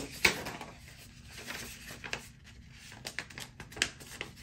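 A sharp tap about a quarter second in as a torn paper slip is set down in a cardboard shoebox, followed by a few faint clicks of the paper and hand against the cardboard.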